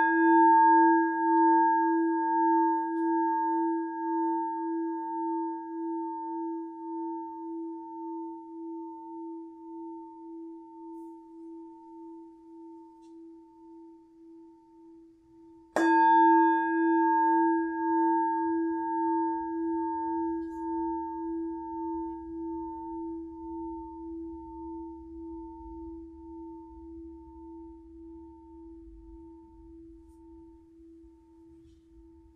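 Hammered Tibetan singing bowl ringing out after being struck with a mallet, its steady tones fading slowly with a wavering pulse. It is struck again about halfway through and rings out the same way.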